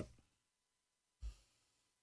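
Near silence, broken about a second in by one short, faint breath close to the microphone.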